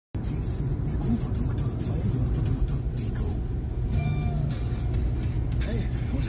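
A steady low rumble with short crackles on top.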